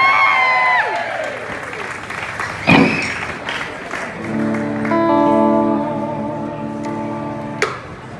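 Audience applauding while an electric guitar is played; from about four seconds in a sustained guitar chord rings out, then is cut off sharply near the end.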